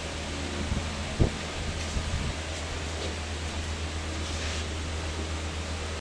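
Steady low machine hum, like a running fan, with a few short dull thumps in the first couple of seconds, the loudest about a second in.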